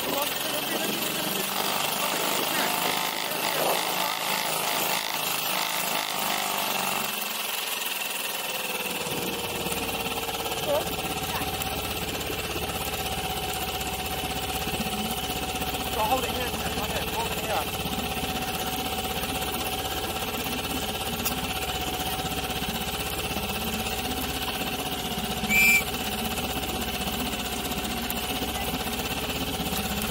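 Small outboard motor on an inflatable boat running steadily, its pitch easing down slightly and its low hum filling in about a quarter of the way through. Near the end, a brief high-pitched squeak.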